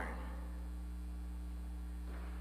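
Steady low electrical mains hum with a few higher overtones, carried through the church's microphone and sound system, over a faint hiss.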